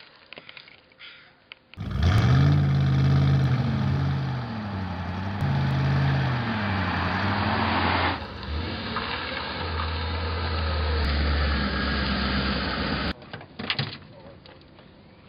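Old truck's engine driving up, its pitch rising and falling several times as it revs and changes speed, then cutting off abruptly about a second before the end.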